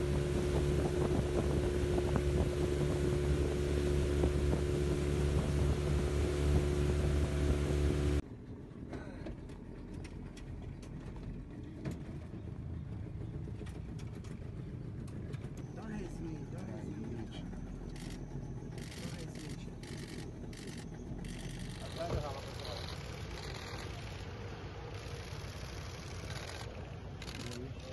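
A boat engine running steadily at speed on a river, with wind and water noise, which cuts off suddenly about eight seconds in. After it, quieter outdoor background with faint voices.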